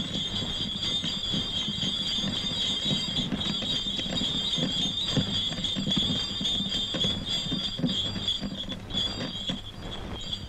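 Bullock cart rolling along, with a steady high-pitched squeal and irregular low knocks beneath it. The squeal stops abruptly near the end.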